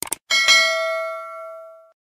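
Two quick mouse-click sound effects, then a bright bell chime that rings and fades, the notification-bell ding of a subscribe animation. It cuts off just before the end.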